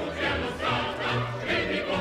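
Opera chorus singing full-voiced with orchestra, on a steady pulse of about two beats a second.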